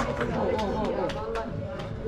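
Indistinct voices talking or exclaiming, with scattered light clicks and taps.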